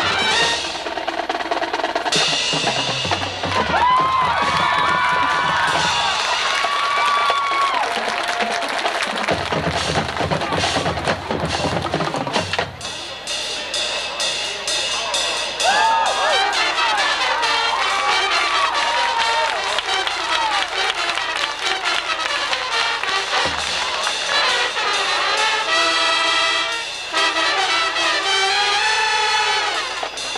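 High school marching band playing its field show, brass and percussion together. Through the middle the drumline takes over with fast snare rolls and rapid drum strokes, then the winds come back in.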